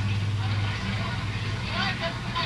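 Lo-fi noise rock tape recording: a steady low hum under hiss, with faint voices in the background.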